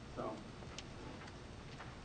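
Quiet room tone with a few faint, irregularly spaced clicks. The clearest comes just under a second in, and two more come close together near the end.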